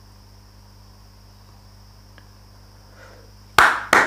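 Steady electrical hum with a faint high whine from the recording setup, then near the end two sharp clicks about a third of a second apart, mouse clicks as the console window is closed.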